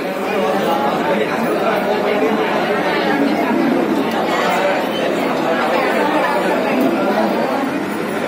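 Indistinct chatter of many people talking over one another in a crowded office.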